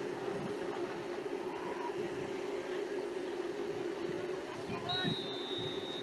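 Faint background sound of a football game picked up by open radio-broadcast microphones: a steady low hum under faint distant voices, with a thin high tone about five seconds in.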